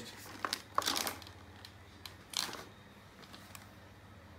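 Handling noise from a plastic toy blaster being gripped and moved: a few sharp clicks, then two brief rustling scrapes, about a second in and again near the middle.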